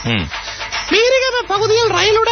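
A person speaking, in a voice that rises and falls widely in pitch and opens with a quick downward swoop.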